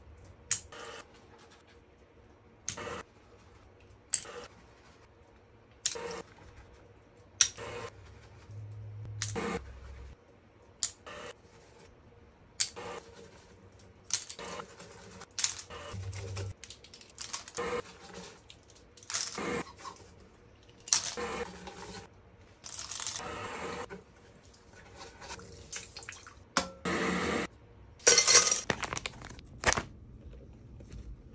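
Makeup brushes being washed in a sink: repeated short clicks and taps of brushes against a silicone cleaning mat and the basin, about one every second or two, with longer stretches of scrubbing and running tap water later on.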